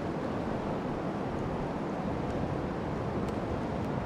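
Fast river current rushing steadily over a shallow riffle around a kayak, an even rushing with no breaks.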